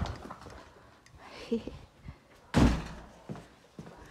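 A door shut with a single loud thud about two and a half seconds in.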